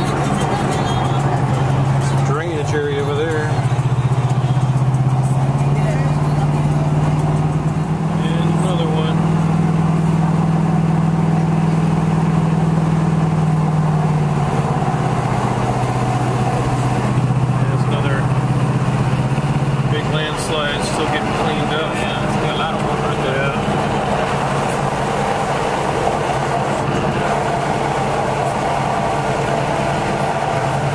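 Car engine and road noise heard from inside the cabin while driving on a highway, a steady low drone that shifts in pitch a few times as the engine speed changes.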